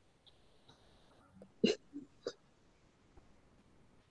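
Three short, sharp vocal sounds from a person in quick succession about halfway through, the first the loudest, heard over a video-call microphone against quiet room tone.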